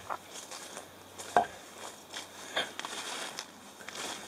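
Footsteps pushing through low forest undergrowth and leaf litter, with irregular rustling and crackling of plants underfoot. One sharper crack comes about a second and a half in.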